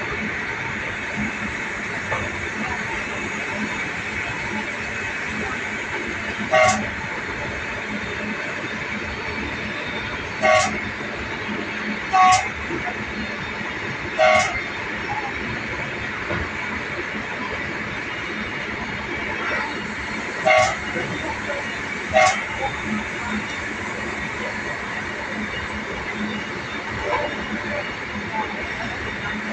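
Steady running rumble of a passenger train heard from inside the carriage while it is under way, with six short horn toots, the first about six and a half seconds in and the last a little past the twenty-second mark.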